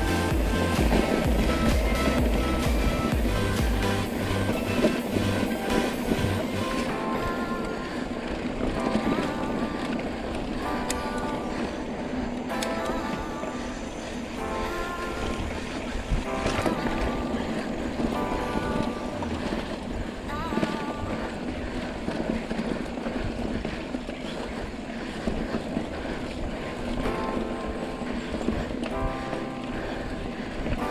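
Background music with pitched notes throughout; heavy deep bass notes in the first few seconds thin out about six seconds in.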